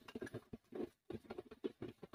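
Spice paste spluttering and crackling as it fries in hot oil in an iron kadai: a faint, irregular run of small pops with short breaks.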